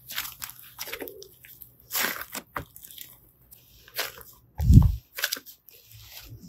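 Soft multicoloured slime being stretched, folded and squeezed by hand, giving irregular crackling and squishing clicks, with one loud, deep squelch a little before the end.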